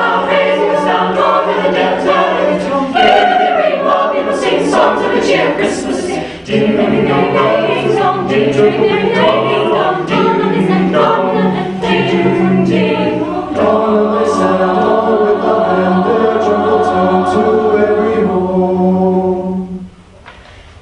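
An a cappella vocal group singing a Christmas song in harmony, voices only with no instruments. About two-thirds of the way through they settle on a long held chord, which cuts off at the very end.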